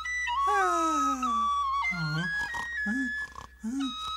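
A cartoon character gives a long, drawn-out yawn that falls in pitch, then makes a few short, low, sleepy vocal sounds, all over a high, slow melody.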